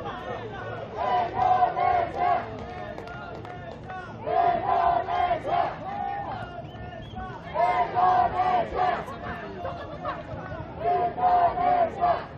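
Crowd of football supporters chanting in unison: a short shouted phrase repeated four times, about every three seconds, over a steady background of crowd noise.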